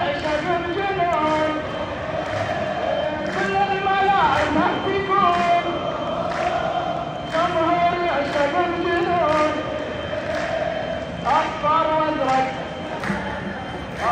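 Football supporters chanting together in a sung, stepping melody, led by a chant leader on a microphone. Under the chant runs a regular beat of about two strikes a second.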